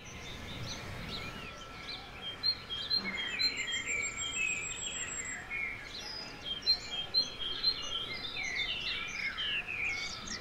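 Many small birds chirping and singing together, overlapping short warbled calls, with a high thin trill over the first few seconds and a faint steady tone underneath.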